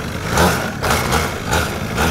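Small mini-moto (pocket bike) engine running low and steady while the bikes roll along, with irregular gusts of noise over it.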